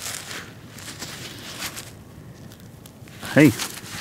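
Gloved fingers rubbing and scraping soil off a freshly dug flat button right at the microphone: soft rustling and gritty scraping of glove fabric and dirt.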